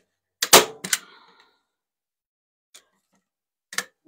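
Hand staple gun firing staples into a painted craft block: a sharp loud snap about half a second in and a second snap just after, then two soft clicks near the end.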